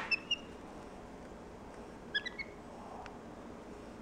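Black-capped capuchin monkey giving short, high-pitched chirps in two brief clusters, a few quick chirps right at the start and another few about two seconds in.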